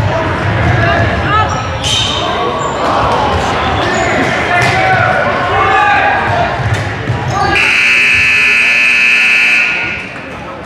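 Gymnasium scoreboard buzzer sounding one steady, loud blast of about two seconds near the end, over basketball dribbling and players' voices echoing in the gym.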